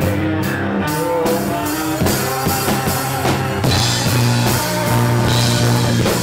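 Live rock band playing loudly, with drum kit, guitar and bass. About a second in, the cymbals fill in and keep going.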